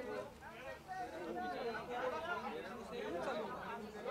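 Overlapping chatter of several voices talking and calling out over one another.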